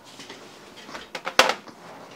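A few light clicks and one sharp knock a little past the middle: hard plastic or metal parts being handled on a desk.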